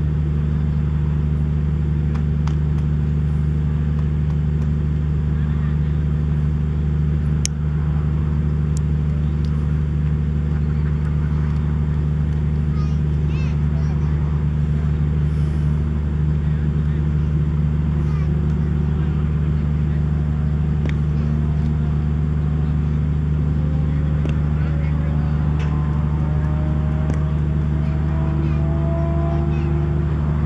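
Steady low mechanical hum like a running engine. In the last several seconds further tones slowly rise in pitch, like an engine picking up speed.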